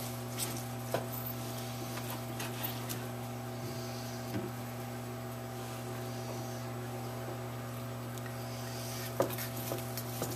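A knife sawing through a cooked roast beef on a plastic cutting board, with soft scraping in patches and scattered light clicks of the knife and fork against the board, the sharpest about nine seconds in. A steady low hum runs underneath.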